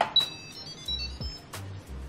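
Light background music with short plucked high notes over a repeating bass. Right at the start there are two sharp clicks as the electric pressure cooker's lid is twisted and lifted open.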